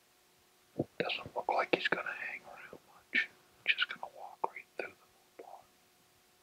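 A man whispering a few phrases, starting about a second in and stopping shortly before the end.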